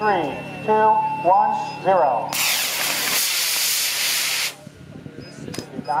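Model rocket motor firing at lift-off: a sudden loud rushing hiss starts about two seconds in, lasts about two seconds and cuts off as the motor burns out.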